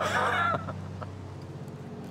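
A brief high, wavering call, like a bird's, in the first half second, then a steady low background hum.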